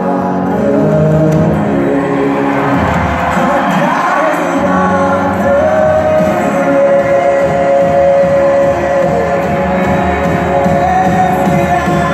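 Live worship song sung in a large hall, voices holding long notes over instrumental backing, with deeper bass instruments coming in about three seconds in.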